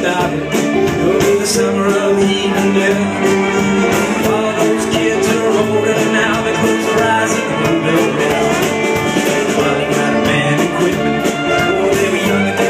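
Live bluegrass string band playing an instrumental break: fiddle, banjo, electric guitar and upright bass together at a steady, driving pace.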